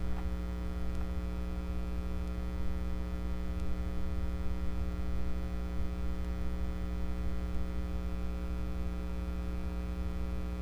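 Steady electrical mains hum with a buzzing ladder of overtones, carried on the recording with nothing else over it.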